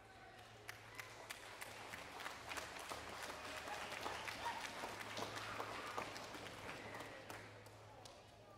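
Audience applauding, building over the first few seconds and dying away near the end.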